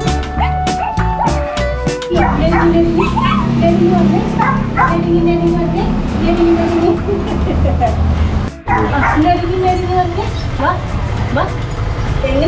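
Background music with a dog barking and yipping in short, sharp calls over it throughout; the sound cuts out briefly about eight and a half seconds in.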